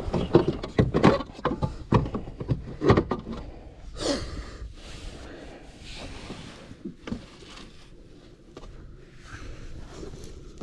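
Handling sounds of a fish being laid out on a plastic measuring board on a kayak deck: a quick run of knocks and clicks in the first three seconds, then a softer scrape about four seconds in and scattered light taps and rustles, with fabric brushing the camera.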